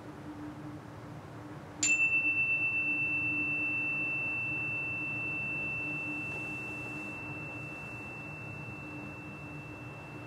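A chime struck once, about two seconds in, ringing a single clear high tone that fades slowly over the following seconds. It is the chime that ends the silent relaxation pose.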